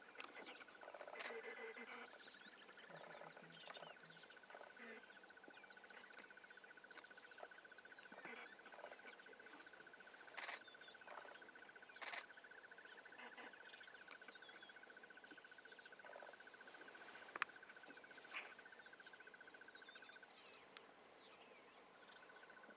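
Faint bush ambience: a steady, high, fast-pulsing insect trill that stops near the end, with short, repeated, high-pitched bird calls and a few sharp clicks.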